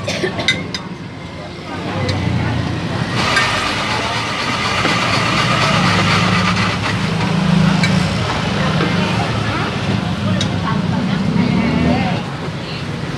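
Road traffic running by, steady engine hum and noise that grows fuller about three seconds in. A few light clinks of a metal spoon against glass topping jars come in the first second.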